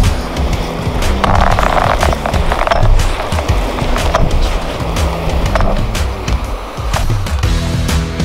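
Background music over the scrape of an ice-fishing sled being dragged across snow-dusted lake ice, with sharp crunches of footsteps on the ice.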